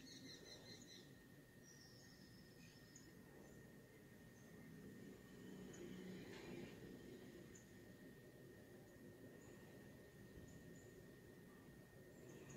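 Near silence: faint room tone with a faint steady high tone and occasional faint, short bird chirps.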